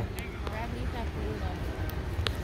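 Faint background voices over a steady low rumble of street noise, with a few small clicks.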